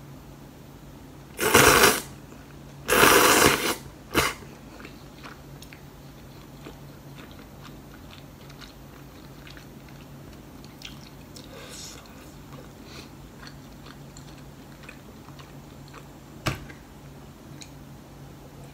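Close-miked eating: two loud slurps of saucy noodles in the first few seconds, then quiet chewing with faint mouth clicks. A single sharp click comes near the end.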